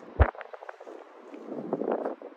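Wind on the microphone: a low rumbling hiss with one short, heavy low thump just after the start.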